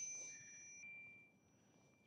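Handlebar bicycle bell rung once, its two-tone ring fading out over about a second.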